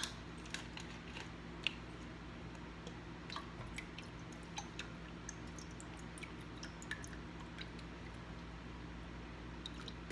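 Small plastic clicks and taps from a squeeze bottle of lemon juice being uncapped and handled, with faint drips as the juice is poured into a pot of water, over a steady low hum. The sharpest click comes a little under two seconds in.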